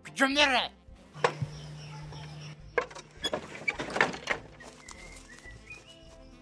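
A man's short shout, then a stretch of hiss and a cluster of sharp knocks and clatters.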